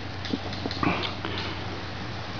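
Faint handling sounds of net-making: a few soft ticks and rustles as cord is worked with a wooden netting needle and mesh gauge, with one brief breathy rustle about a second in.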